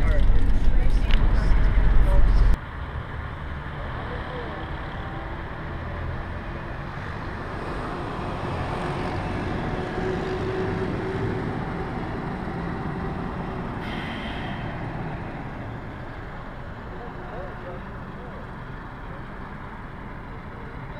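Low rumble of a coach's engine and road noise heard inside the moving bus, which cuts off suddenly about two and a half seconds in. What follows is a much quieter open-air hum with voices in it.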